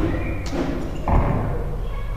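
A dull low thump about a second in, over a steady low hum.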